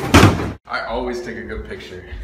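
Kitchen cabinet door slammed shut hard, a sudden loud bang in the first half-second. After a short break comes a quieter, steady stretch with a few held low tones.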